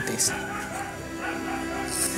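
A woman crying and whimpering over background music.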